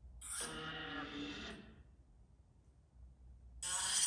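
Two bursts of sound from the Necrophonic ghost-box app playing through a phone's speaker: one about a second and a half long near the start, and a shorter, louder one near the end.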